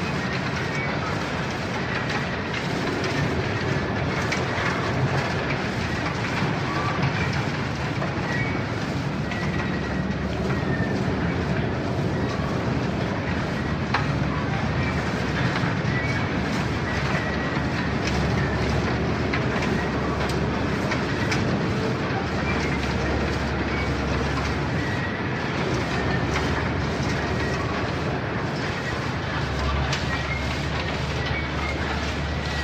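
Steady, loud mechanical rumble with short high squeals and a few clicks scattered through it, the sound of heavy machinery or rail wagons running.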